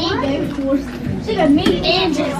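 Indistinct voices talking, too unclear to make out words.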